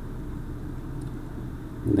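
Steady low rumble of background room noise under the narration, with a man's voice starting near the end.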